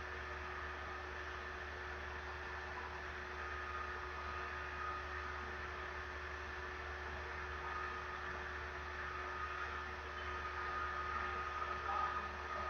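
Steady electrical hum and hiss with faint, constant tones: the background noise of the recording setup, with no speech.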